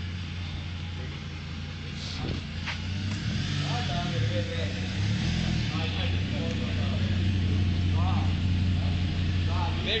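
Car engine running with a steady low hum, its pitch swinging up and down briefly a few seconds in as it is revved lightly, then running on a little louder.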